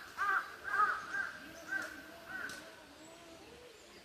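A crow cawing, a run of about six caws in quick succession that grow fainter and die away within three seconds.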